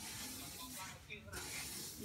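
A long-handled rake dragged through a layer of drying paddy rice, the grain rustling and hissing as it is pushed and turned. Two strokes, with a short break about a second in.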